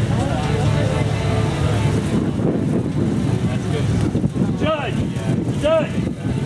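Rock crawler's engine running low under people talking. Near the end, two loud shouts of "Judge!" call for the judge as the truck gets into trouble on the slope.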